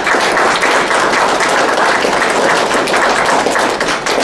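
Audience applauding: a roomful of people clapping, starting abruptly and holding steady before falling away at the end.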